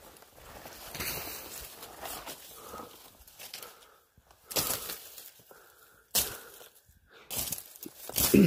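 Footsteps on dry leaf litter and twigs, with leaves and branches brushing past, in an irregular walking rhythm. A few steps in the second half are louder.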